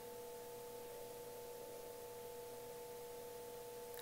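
Faint steady hum of three held tones sounding together over low room hiss.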